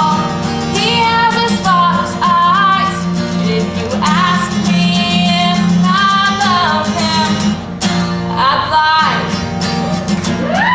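A young woman singing a country-pop song while strumming chords on an acoustic guitar.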